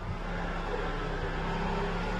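A steady low mechanical hum with an even hiss underneath, holding a constant level throughout.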